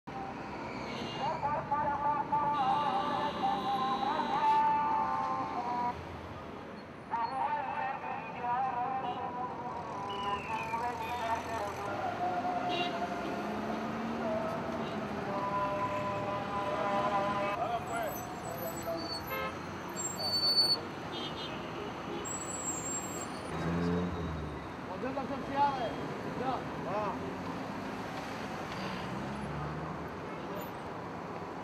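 Street sound: steady traffic noise with car horns and people's voices.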